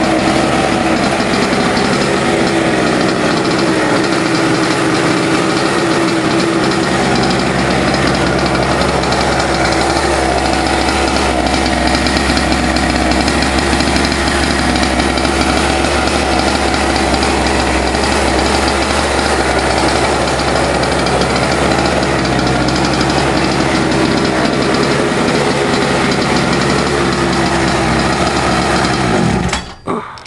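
Small go-kart engine running steadily while parked, then stopping suddenly near the end.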